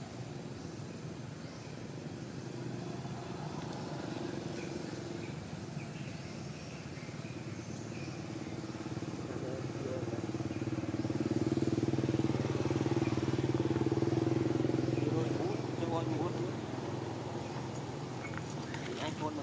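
A motor vehicle's engine running steadily. It grows louder about ten seconds in and fades a few seconds before the end.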